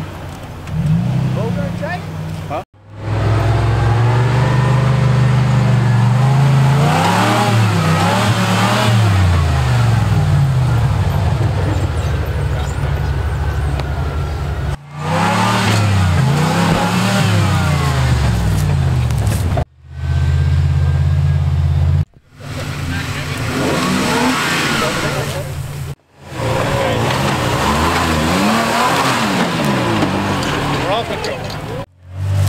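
Toyota 4x4 pickup engines revving hard, pitch rising and falling again and again, as the trucks climb a steep dirt bank. The sound breaks off abruptly several times and picks up again.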